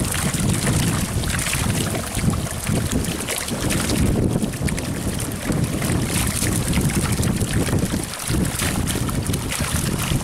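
A cast net being dragged through shallow pond water toward the bank, the water splashing and sloshing continuously, with wind buffeting the microphone.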